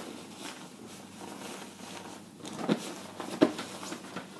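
Nylon jacket fabric rustling as it is handled and smoothed. Two short, sharp clicks come near the end, the second the louder.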